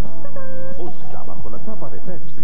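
A man's voice letting out a drawn-out, exaggerated cry, then a run of quick warbling vocal sounds, over background music.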